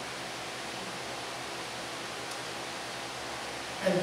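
Steady, even background hiss of room tone, with a man's voice starting a word near the end.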